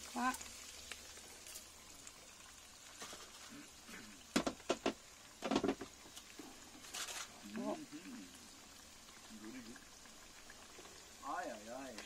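Faint, steady sizzle of floured fresh anchovies deep-frying in hot oil in a pan. A few sharp clicks come about four and a half and five and a half seconds in.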